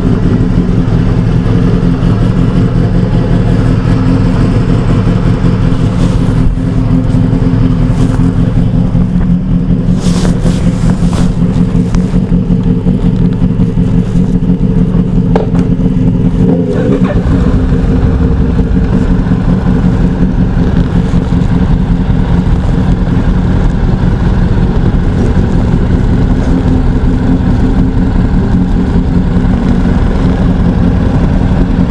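Motorcycle engines idling steadily at close range, with a change in the low rumble about 17 seconds in.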